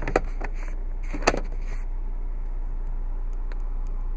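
A few plastic clicks and a sharper knock about a second in, from the overhead sunglasses compartment of a 2012 Volkswagen Golf being opened and pushed shut, over a steady low hum in the car's cabin.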